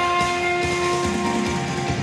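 Saxophone holding one long note of a trot melody over band accompaniment with a steady beat.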